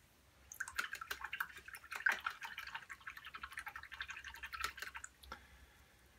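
A paintbrush being swished in a jar of water, about five seconds of small splashing and sloshing as the brush is rinsed. It stops shortly before the end.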